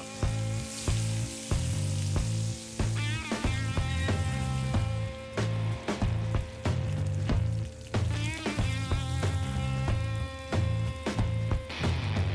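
Pork shoulder sizzling in hot oil and butter in a frying pan as it browns and its fat renders. Background music with a steady, repeating bass line plays over it.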